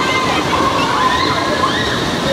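Continuous heavy splashing as a row of children kick their legs into pool water from the edge, churning it up, with children's voices calling out over the noise.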